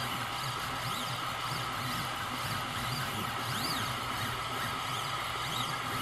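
ACMER S1 diode laser engraver running an engraving job: its stepper motors give faint whines that rise and fall in pitch several times as the laser head moves, over a steady whirring hiss.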